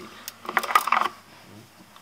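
A short burst of rapid clicking and clattering, as of hard objects knocking together, starting about half a second in and lasting about half a second.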